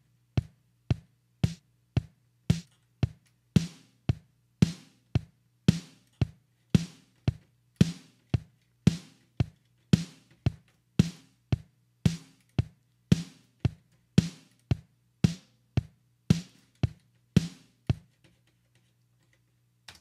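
Multitrack drum recording playing back on its own with no other instruments: a steady beat of sharp drum hits, about two a second, stopping about two seconds before the end.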